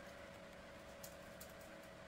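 Near silence with a faint steady hum from a small LED light-and-fan unit screwed into a ceiling light socket, its blades spinning, and a faint click about halfway through.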